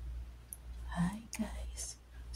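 A woman speaking softly, starting about a second in, over a steady low hum.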